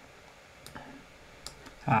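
A few faint, sharp computer mouse clicks against quiet room tone, with a man's voice starting right at the end.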